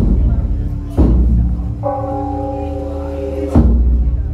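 Temple ceremonial music: a large drum struck three times, at the start, about a second in and just before the end, with a held pitched note sounding underneath and shifting to a new note midway.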